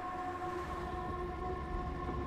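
Film soundtrack: a held drone of several steady tones over the low rumble of an old car driving.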